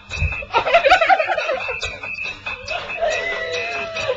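Girls laughing and giggling, with music playing in the background.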